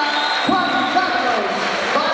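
Indistinct voices echoing in a large hall, with a dull thump about half a second in.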